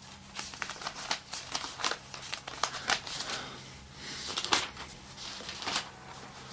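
Thin Bible pages being turned and flipped: a quick series of crisp paper rustles, with a couple of louder page flicks in the second half.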